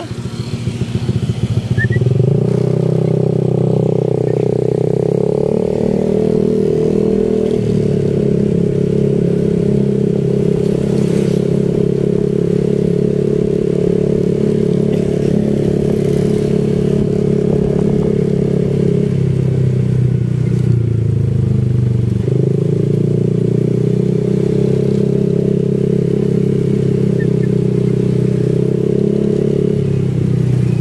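Motorcycle engine running while riding, a steady drone that picks up about two seconds in, eases off and dips for a few seconds past the middle, then picks up again.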